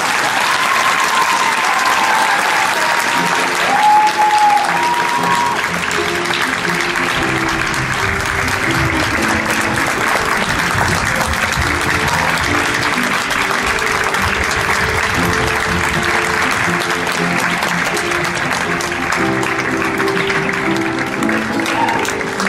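Audience applauding steadily, with a few high calls or whoops in the first few seconds, while an upright piano plays on underneath.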